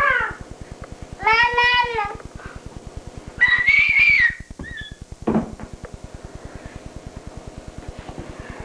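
Squeaky, high-pitched playful voice sounds: a pitched call about a second in, a higher squeal around three and a half to four and a half seconds, and a short falling sound a little after five seconds. A faint, fast, even ticking runs underneath.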